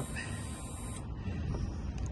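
The Honda CBR500R's electric fuel pump whirring as it primes when the ignition is switched on, with the engine not running.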